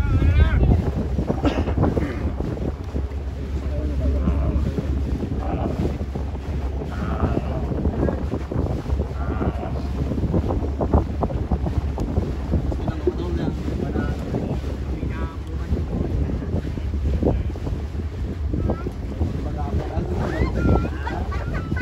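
Wind buffeting the microphone aboard a boat on choppy water, a steady low rumble with water washing and slapping irregularly. Faint voices come through now and then.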